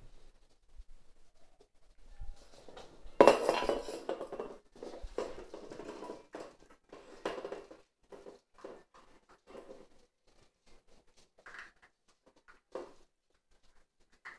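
Stainless steel food bowl clattering and clinking on the floor as Jack Russell Terrier puppies push at it and eat from it. The loudest clatter comes about three seconds in, followed by a few seconds of busy knocking, then scattered lighter clinks.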